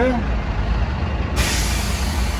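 Bus diesel engine idling with a steady low rumble; about a second and a half in, a sudden, continuing hiss of compressed air starts up, an air brake venting.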